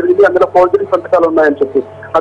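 Speech only: a reporter speaking continuously in a phoned-in news report, with a faint steady low hum under the voice.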